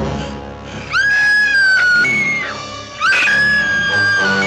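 Loud dramatic orchestral stinger from a 1950s horror score, with a woman's high scream that rises and is held, twice in a row, as the monster appears.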